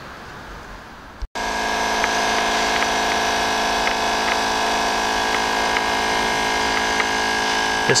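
Smoke machine's pump running steadily, pushing pressurised smoke into a turbo engine, starting a little over a second in. Faint scattered little pops sound over the hum, like popcorn popping: smoke and pressure bubbling through oil pooled in the intercooler, which the mechanic takes as the sign that the intercooler is full of oil.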